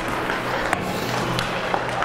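Hockey arena ambience: a steady wash of crowd and rink noise with a few sharp clicks, like sticks or a puck striking on the ice.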